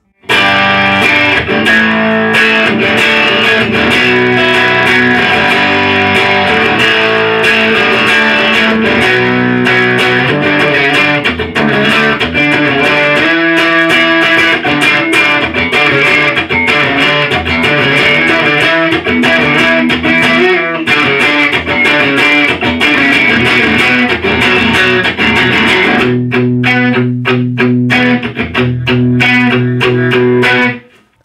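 2012 Fender Jaguar 50th Anniversary electric guitar played through an amplifier: continuous chords and riffs with many quick note attacks. About four seconds before the end it changes to sparser, heavier struck chords with strong low notes, then stops.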